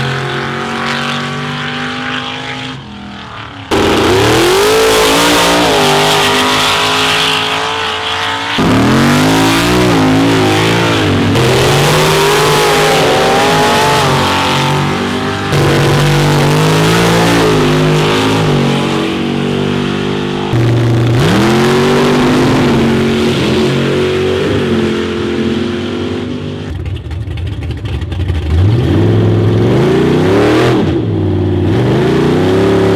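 Mud drag trucks' engines revving hard at full throttle as the trucks race through a mud pit. It comes as a run of separate passes that cut one into the next, the engine pitch climbing and falling within each.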